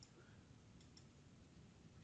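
Near silence with two faint computer mouse clicks about a second in.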